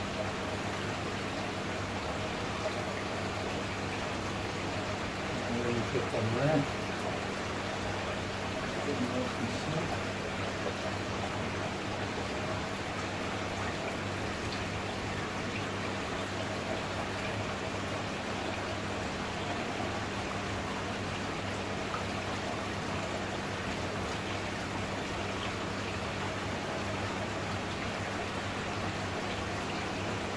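Linear diaphragm pond air pump humming steadily under a constant rushing noise. A brief pitched sound about six seconds in, and a smaller one near nine seconds, come while a hose connector is pushed onto the pump outlet.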